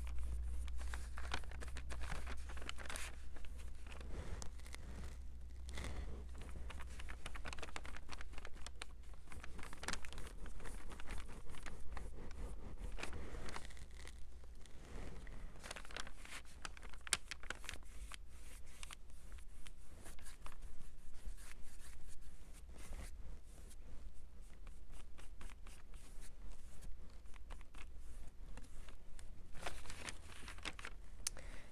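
Paintbrush bristles stroking paint onto a flat craft cutout: an irregular run of soft scratchy brush strokes, with occasional rustles of the kraft paper covering the table. A steady low hum runs underneath.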